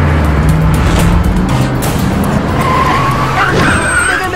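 An SUV's tyres skidding as it brakes hard to a stop, with a squeal rising near the end, over background music.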